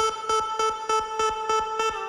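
Beatbox loop-station round playing back: a steady, buzzy, horn-like held tone over a fast, even beat of about five hits a second.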